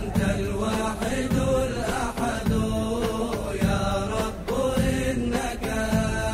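Arabic devotional nasheed as background music: a voice chanting long, drawn-out notes that change pitch about once a second.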